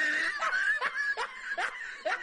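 A high-pitched snickering laugh, pulsing about two to three times a second.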